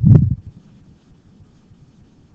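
A single dull thump right at the start, short and low-pitched with a sharp click at its onset, followed by faint room noise.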